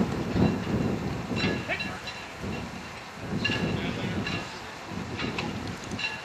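Wind buffeting the microphone, a low uneven rumble, with brief distant shouts about every two seconds.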